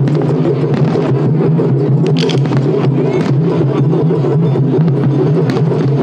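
Loud, continuous low rumble of festival-float taiko drumming and crowd din, with scattered faint cracks.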